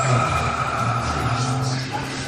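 A steady drone of sustained tones, one low and one higher, held without change over a faint hiss.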